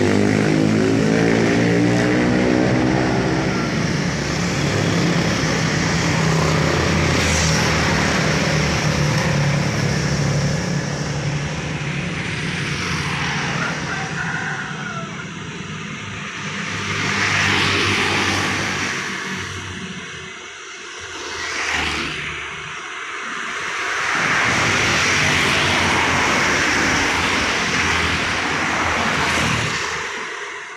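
Road traffic of motor scooters and the occasional car passing close by, with a steady engine drone for the first several seconds, then a string of vehicles swelling and fading as each goes past.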